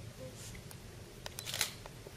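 Camera shutter clicks: a few short, sharp clicks, the clearest about a second and a half in, over quiet room tone.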